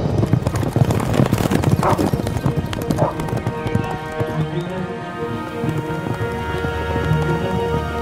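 Horses galloping on a dirt track, a rapid clatter of hoofbeats that thins out about halfway through, over orchestral film music.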